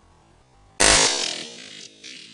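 A single hunting-rifle shot about a second in, sudden and very loud, with a tail that fades over about a second, over electronic background music.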